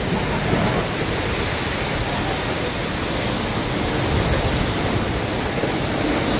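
Strong storm wind blowing over the microphone: a steady rushing noise with a heavy, uneven rumble underneath.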